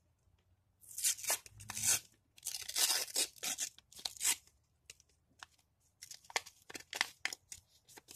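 A handmade paper surprise packet being torn open by hand: several long rips over the first few seconds, then shorter, sharper rustles as the torn paper is pulled apart.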